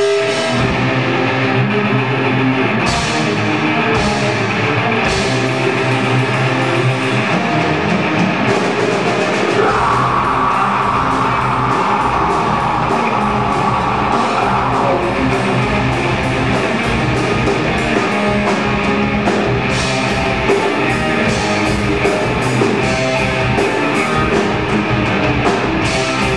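A heavy metal band playing live: distorted electric guitars over a drum kit. The song builds. At first there are only a few cymbal hits. About ten seconds in, the heavy low end comes in under a long held note. Later the drumming turns fast and dense.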